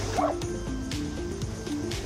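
An Irish Setter gives a single short bark shortly after the start, over background music, while swimming and splashing in a river.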